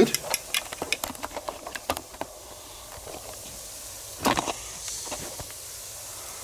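Metal grill tongs clicking and scraping on the grate of a gas grill, rapid for the first two seconds, with a louder clack a little after four seconds in. Under it a steady low hiss from the grill, meat sizzling on the grate.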